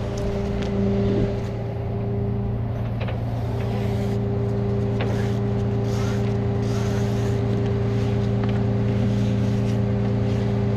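Tow truck engine idling with a steady, even hum. A few light clicks from the nylon wheel strap and its hardware being handled.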